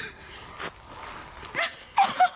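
A sharp knock under a second in, then a woman's short high rising yelp about one and a half seconds in, which breaks into louder laughter right at the end.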